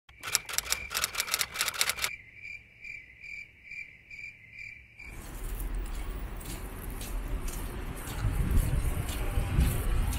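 A quick run of clicks over a high tone, then a high chirp repeating evenly about twice a second: an intro sound effect. About five seconds in it cuts off suddenly to outdoor street ambience with a low rumble that grows louder.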